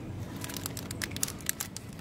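Crinkling and clicking of clear plastic packaging on nail polish gift sets as they are handled on a pegboard shelf, a run of short sharp crackles over faint steady shop background.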